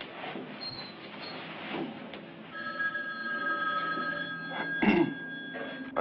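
Steady high ringing tones begin about halfway through, one cutting off after a second or so while another carries on, with a single sharp knock near the end.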